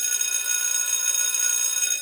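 A steady, high-pitched electronic tone that starts and stops abruptly, a production sound effect between segments.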